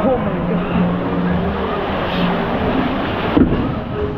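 Log flume boat riding through the water channel of a dark show scene: steady rushing water and ride noise with voices over it. There is a sharp knock a little after three seconds in.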